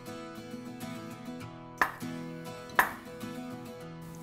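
Soft acoustic guitar background music, with two sharp knocks about a second apart from a kitchen knife striking a wooden cutting board while slicing an avocado.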